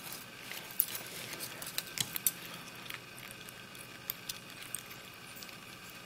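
Faint, irregular small metallic clicks and scrapes of a pick and tension wrench working in the cylinder of a brass American Lock barrel padlock, as its pins are set one at a time during single-pin picking.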